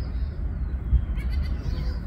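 Goat bleating once, briefly, in the second half, over a steady low rumble.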